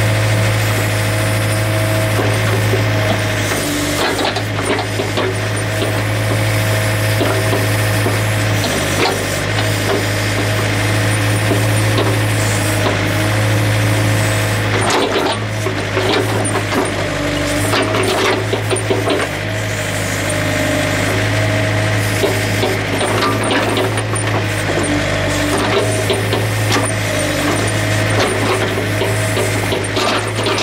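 Compact tractor-backhoe's diesel engine running steadily under load, with irregular cracks and knocks as the backhoe's ripper tooth tears up frozen soil.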